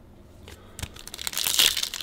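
Foil trading-card pack wrapper crinkling as it is torn open, starting about a second in and getting louder toward the end.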